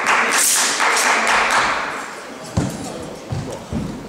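A loud rushing noise for about the first two seconds, then three heavy thuds, about half a second apart, of a wushu performer's feet stamping on the carpeted competition floor.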